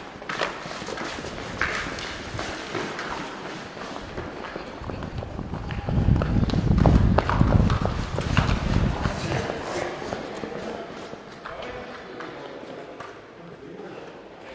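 Running footsteps on a concrete floor with kit rattling, as a player runs carrying a camera. A heavy low rumble of movement on the microphone comes up in the middle and fades after a few seconds.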